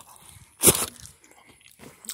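A single short crunch, lasting about a third of a second, a little over half a second in.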